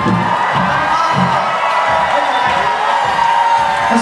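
Live band music with sustained held notes and irregular low thuds, mixed with a large concert crowd cheering.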